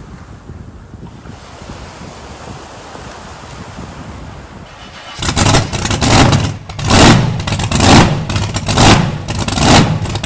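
Waves washing up on a sandy beach, with wind on the microphone. About five seconds in, a much louder outro sound effect cuts in: an engine-like revving sound that swells in repeated surges about once a second.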